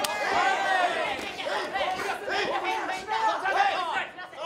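Several raised voices shouting over one another: calls from the corners and crowd during a kickboxing bout.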